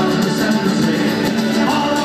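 Live Irish folk band playing an upbeat tune: strummed guitars, a mandolin-type instrument and a frame drum (bodhrán) with a steady beat, amplified through a PA in a large hall.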